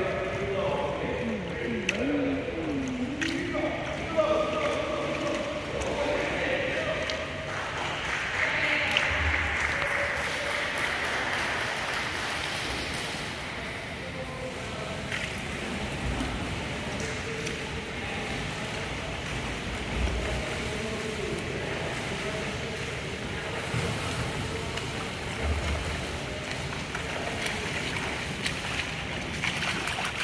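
Indoor swimming pool sound: water splashing from a swimmer's freestyle strokes, with distant voices echoing in the hall, clearest in the first few seconds.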